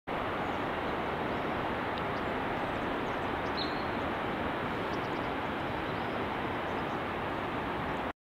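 Steady outdoor ambience: an even rushing noise at constant level, with one faint high chirp a little past three and a half seconds in.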